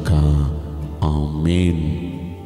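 A man's voice speaking Telugu in two slow, drawn-out phrases, with a short break about a second in, over soft, steady background music.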